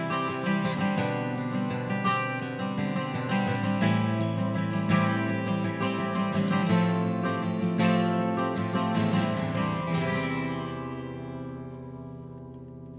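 Acoustic guitar played solo, picking the closing instrumental of a folk song. About ten seconds in, the last chord is left ringing and slowly fades.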